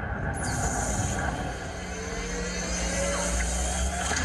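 Steady background noise of a large hall picked up by a camcorder: a continuous rushing hiss with low rumble, and a low hum coming in about halfway through.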